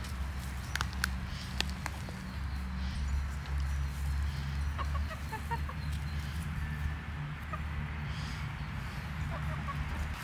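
Domestic hens clucking softly close by, in short runs around the middle and again near the end, over a steady low rumble, with a few light clicks in the first two seconds.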